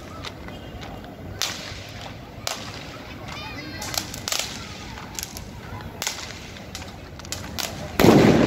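Firecrackers going off one after another at irregular intervals, a dozen or so sharp cracks of varying loudness over a steady background hum. A short high warbling whistle sounds a little past three seconds in.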